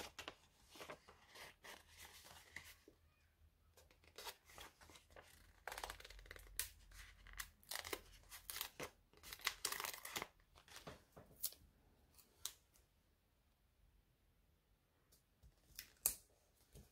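Faint crackling and rustling of a paper sticker sheet being handled and flexed as stickers are peeled off its backing, in many short bursts that thin out to near quiet for the last few seconds.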